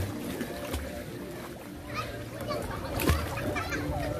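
Outdoor swimming pool ambience: water splashing close by, with a sharper splash near the start and another about three seconds in, under the scattered calls and chatter of children and adults across the pool.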